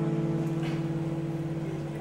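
Background music: a guitar chord held and ringing steadily, slowly fading.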